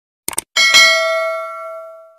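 A quick double mouse click, then a notification bell sound effect that dings once about half a second in and fades away over about a second and a half.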